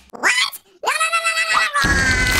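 Cartoon reverse-barf sound effect: a short rising, pitched vocal cry, then a longer held one, followed near the end by a steady held tone.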